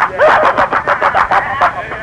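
A voice speaking, thin and cut off at the top like an old radio or telephone recording.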